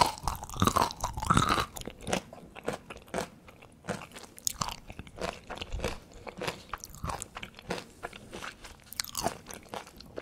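Close-miked chewing of crunchy pickled okra. The crunches are loudest in the first second or two, then carry on as a steady run of small crisp clicks as the pods are chewed.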